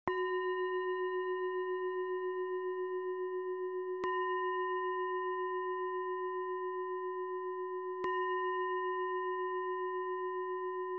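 A meditation bell of the singing-bowl kind struck three times, about four seconds apart. Each strike rings on with a slow wavering into the next.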